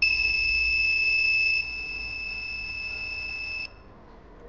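Mini buzzer of a breadboard MQ2 smoke-detector circuit sounding one steady high-pitched tone, set off by the sensor detecting smoke. It drops in loudness about a second and a half in and cuts off shortly before the end.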